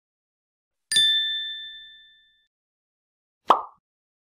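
Logo-animation sound effects: a bright bell-like ding about a second in, ringing and fading away over about a second and a half, then a short soft burst of noise near the end.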